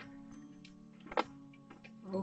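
Faint steady background music with a few small clicks from hands working inside a computer case. The sharpest click comes about a second in, as the old video card is worked loose from its slot.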